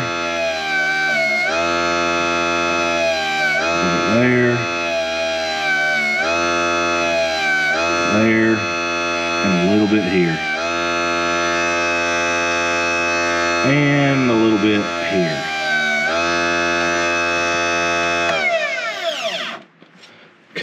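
Electric motor of a benchtop RC tire truer running steadily with a foam tire spinning on its spindle while the tread is pre-feathered by hand, its whine wavering briefly now and then. Near the end it is switched off and winds down, the pitch falling until it stops.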